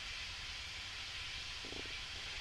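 Faint room tone of a talk recording: a steady hiss with a low rumble underneath, and a faint brief sound near the end.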